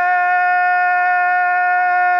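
A singer holding one long sung note at a steady pitch, without vibrato.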